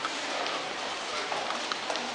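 Footsteps clicking on a hard floor, a few sharp irregular clacks over the steady background noise of a large indoor hall.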